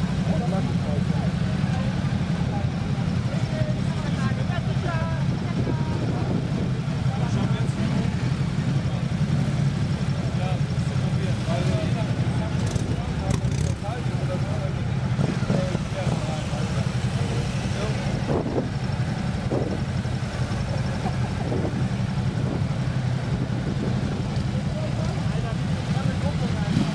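Ducati V-twin motorcycle engines idling steadily, a low even rumble with no revving, while people talk indistinctly over it.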